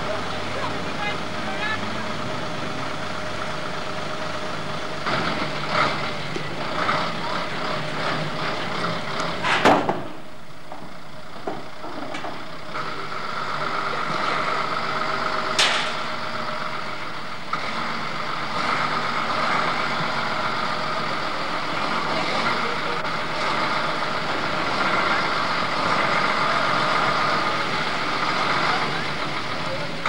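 Truck engine running steadily, with indistinct voices and two sharp clicks about ten and sixteen seconds in.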